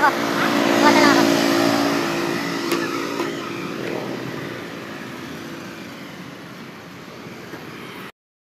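A motor vehicle's engine passing by on the road, loudest about a second in and then slowly fading, over steady road and wind noise from a moving bicycle.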